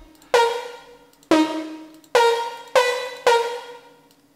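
Single synth lead notes sounding one at a time as a melody is entered note by note in a piano roll. There are five separate notes, each starting sharply and fading away before the next.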